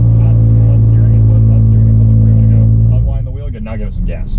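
Car engine held at steady revs, heard from inside the cabin, with a steady low drone. About three seconds in the engine note drops away as the driver lifts, and a voice speaks over it.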